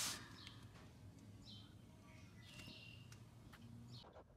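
Near silence: faint room tone with a few faint, short, high chirps.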